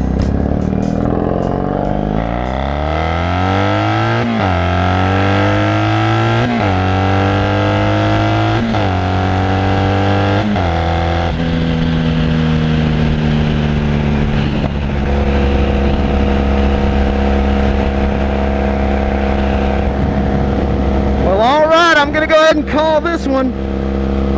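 Motorcycle engine pulling away from a stop and accelerating through the gears, its note rising and dropping back at four upshifts, then running at a steady cruising speed.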